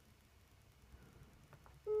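iPad FaceTime call-failed tone: near the end, after a quiet stretch, the first short steady beep of a repeating electronic tone, played through the tablet's speaker as the call fails.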